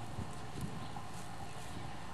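A horse shifting its hooves at the barn doorway, with two dull thuds within the first second.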